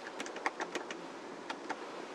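Typing on a computer keyboard: about ten quick key clicks at an uneven pace.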